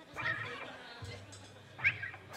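Two short, high-pitched yelps or squeals from a voice: one just after the start and a louder, sharper one near the end. Under them is a steady low hum from the stage amplifiers.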